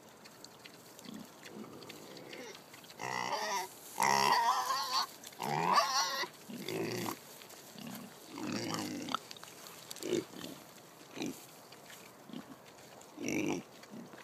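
Kunekune pigs grunting and squealing, excited over food. A run of loud, wavering squeals comes a few seconds in, followed by short grunts about once a second.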